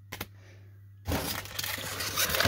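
Two light taps, then from about a second in a loud crinkling of a foil baseball-card pack wrapper being handled.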